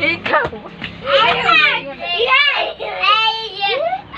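High-pitched children's voices squealing and calling out in play, in several short bursts with sharp rises and falls in pitch.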